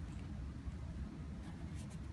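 Faint scratchy rustling of fingers handling a knit sneaker upper and its heel tab, with a couple of brief scratches near the end, over a steady low hum.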